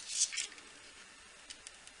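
Wires and a plastic-cased electronics board handled by hand: a brief scraping rustle in the first half second, then a few faint ticks near the end.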